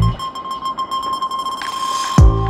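Background music at a break in the beat: the drums and bass drop out, leaving one steady high held electronic tone over a soft hiss.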